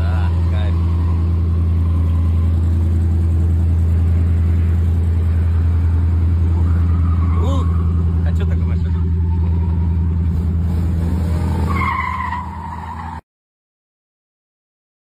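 Drift car engine idling steadily close by, a loud even low hum. It drops in level near the end and then cuts off abruptly.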